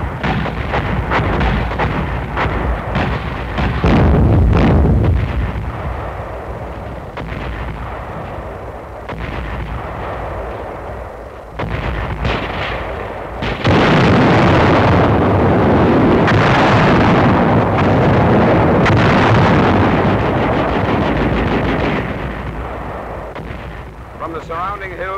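Mortar fire and shell bursts: a run of sharp reports in the first few seconds, the loudest about four seconds in, then a long continuous rumble of a barrage from about halfway through that fades near the end.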